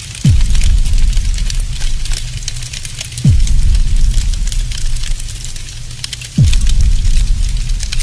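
Cinematic trailer-style sound effects: three deep booming hits about three seconds apart, each dropping steeply in pitch into a low drone, over a continuous fire-like crackle.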